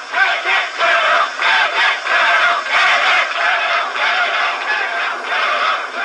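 Many voices singing together, steady through the whole stretch, on a thin old film soundtrack with no bass.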